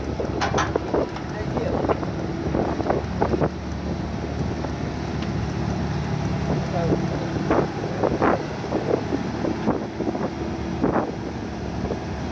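Liebherr wheeled excavator's diesel engine running steadily while the machine slews its upper body and swings its boom, with scattered knocks and clanks.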